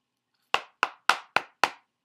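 Five quick knocks on a hardcover cardboard box set, about four a second, showing that it is a hard box.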